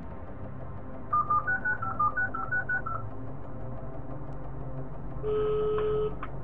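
Telephone keypad tones: a quick run of about a dozen short dialing beeps over a low steady drone, followed near the end by a steady tone.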